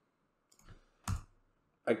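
A single sharp click of a computer key being pressed about a second in, with a fainter tap just before it. The keypress answers a virtual machine's 'press any key to boot' prompt.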